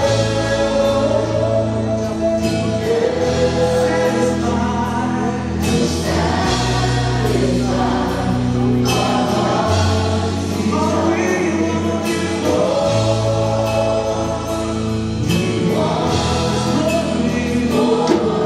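Live church worship band playing and singing: several voices together over acoustic guitars, bass, keyboard and drums, with long low bass notes that change every few seconds.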